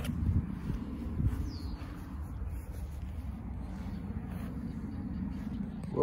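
Low, uneven rumble of wind buffeting the microphone outdoors, swelling in gusts, with a faint short high chirp about a second and a half in.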